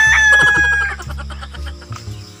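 Rooster crowing, its long final note held and falling slightly before it tails off about a second in.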